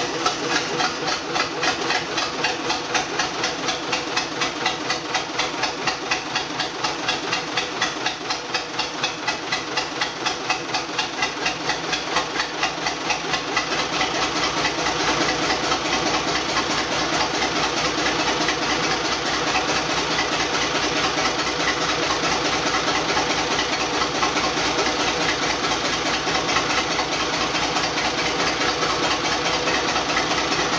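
Naturally aspirated Cummins 5.9 inline-six diesel idling steadily on its first run after installation, a continuous train of even firing pulses. About halfway through, the pulses blur together and the running evens out.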